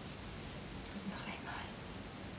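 A woman's brief whispered word, about a second in, over a steady faint hiss.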